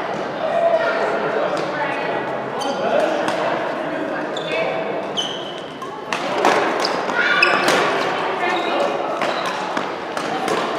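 Badminton doubles play in a large echoing hall: sharp racket hits on the shuttlecock, with footsteps and shoe squeaks on the court mats, over voices in the background.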